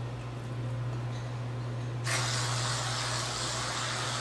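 Aerosol can spraying foam onto a paper plate: a steady hiss that starts suddenly about two seconds in and keeps going.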